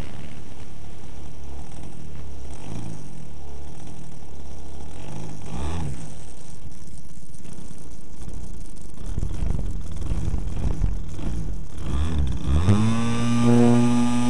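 Engine of a 30%-scale Peakmodel Yak 54 radio-controlled aerobatic plane, heard from on board: running low and uneven with dips and rises in pitch, then near the end revving up quickly to a steady, higher note.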